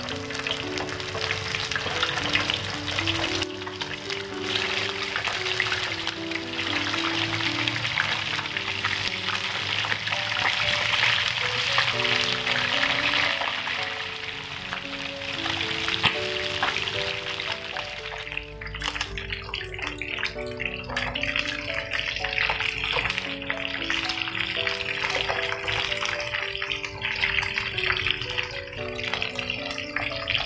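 Food sizzling as it fries in hot oil in a frying pan, under background music. The sizzle is strongest in the first half and thins out a little past the middle.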